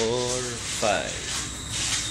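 Rubbing, rasping noise, with two short voice sounds: one at the start and one about a second in.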